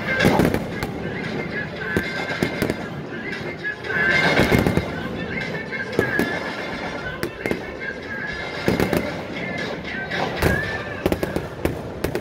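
Halftime fireworks going off in repeated sharp bangs and crackles, heaviest about four seconds in and again near the end, over a massed marching band holding sustained chords.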